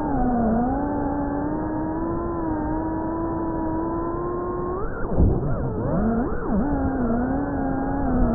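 GEPRC Cinelog FPV drone's brushless motors and propellers whining, heard through the onboard action camera. The pitch holds fairly steady at first, then swings quickly up and down for a couple of seconds from about five seconds in as the throttle is worked through a trick, before settling again.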